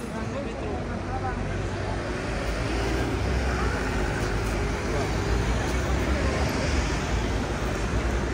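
Road traffic on a city street: engines and tyres of passing cars and buses, a deep rumble swelling a couple of seconds in and staying loud, with faint voices of passers-by.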